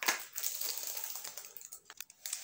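Tissue paper and product packaging rustling and crackling as hands rummage through a cardboard beauty box, with a sharp tap at the very start.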